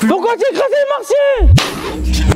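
A man's voice calling out with pitch swooping up and down, without clear words. About a second and a half in, a deep boom sound effect with a burst of hiss hits, the loudest moment, and leaves a low rumble.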